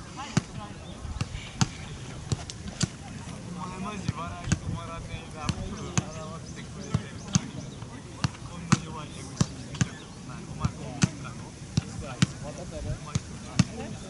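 Soccer balls being kicked on an outdoor pitch: irregular sharp thuds, about one or two a second, with players' voices calling out now and then.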